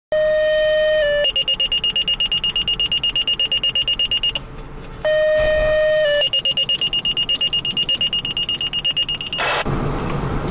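Fire dispatch tone-out: a long steady tone stepping down to a short second tone, then a rapid run of high-pitched pager alert beeps, about nine a second. The sequence is given twice, and a short burst of radio static comes near the end.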